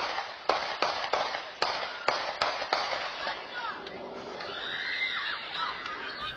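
A rapid string of gunshots, about two to three a second, through the first three seconds, picked up by a home security camera's microphone: return fire of about ten rounds. Near the end, distant children screaming.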